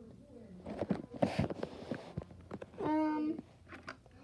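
Light clicks and knocks of toys being handled, with a short breathy burst about a second in, then a child's voice holding a short 'mm'-like hum about three seconds in.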